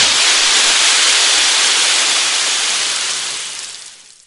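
Audio-drama sound effect: a loud, steady hiss of rushing noise with no pitch, fading out near the end.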